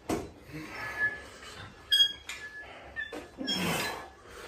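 Metal weight plates on an EZ curl bar clinking and rattling as the bar is lifted, with one sharp ringing clank about two seconds in and lighter metallic taps around it. A short vocal sound near the end.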